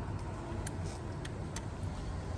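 A click-type torque wrench tightens a handlebar riser clamp bolt, giving three sharp metal clicks about half a second apart, the last the loudest. A steady low rumble runs under them.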